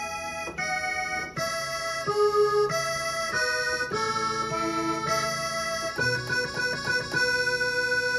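Yamaha PSR-S670 arranger keyboard playing a melody over sustained chords on a blended accordion-and-organ voice. The notes change about once or twice a second.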